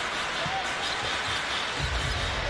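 Arena crowd noise with a basketball being dribbled on the hardwood court, the low bounces coming in near the end.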